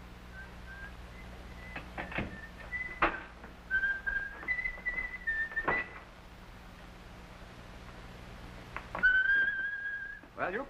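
A person whistling a slow tune in a few short held notes, then one longer note near the end. A few sharp knocks fall between the notes.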